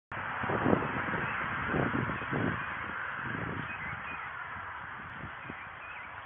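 Footsteps and clothing rubbing on a body-worn police camera's microphone as the wearer walks, a few dull low thumps over a steady hiss.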